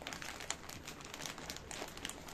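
Plastic silage bag crinkling and rustling as it is handled, with irregular small crackles and one sharper crackle about half a second in.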